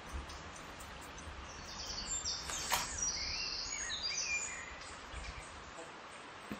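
Flat paintbrush being worked over paper, laying tempera in strokes: a soft, high swishing that swells in the middle few seconds, with one sharp click partway through.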